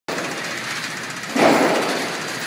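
A single shot from a semi-automatic 7.62×39mm SKS rifle about a second and a half in, ringing on in the reverberant indoor range, over steady background noise.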